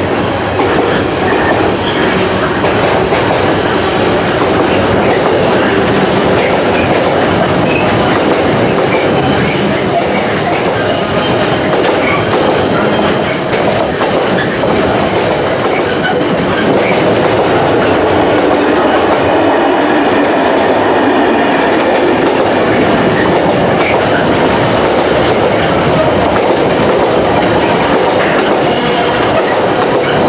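Container flat wagons of a freight train rolling past at close range: a steady, loud noise of steel wheels running on the rails.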